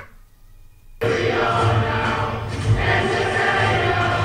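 Film soundtrack playing through a TV: the sound drops out for about a second while playback skips forward 10 seconds, then comes back with music and a crowd singing.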